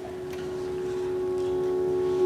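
Opening of the routine's music: a single held note fading in, swelling steadily louder.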